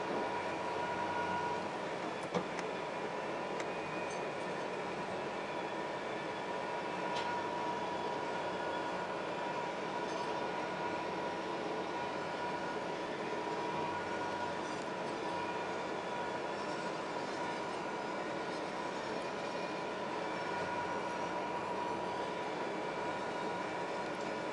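Lathe running steadily while a self-made roller presses a spinning 2 mm steel disc down over a mandrel in metal spinning, a steady grinding run with a high whine held through it. A single sharp click comes about two seconds in.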